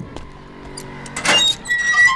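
A metallic clank about a second and a half in, then a short high ringing tone, as the iron-barred lockup gate is handled. A faint steady drone runs underneath.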